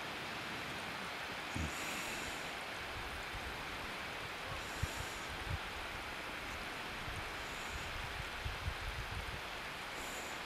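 Steady rush of wind on the microphone, with gusts buffeting it as low thumps from about three seconds in.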